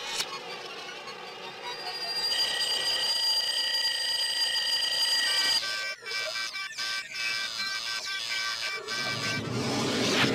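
Cartoon music with electronic sound effects: high steady electronic tones hold through the first half, then give way about halfway through to short repeating beeps and clicks.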